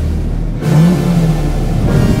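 Chevrolet Corvette C8's V8 engine revving up once and easing off, its pitch rising then falling over about a second, over background music.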